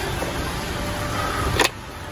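Steady hiss of a car on a rain-wet road, broken by one sharp click about one and a half seconds in, after which the hiss is quieter.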